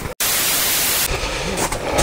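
A brief dropout, then a sudden, loud, even static hiss lasting about a second that cuts off abruptly, leaving a quieter background hiss.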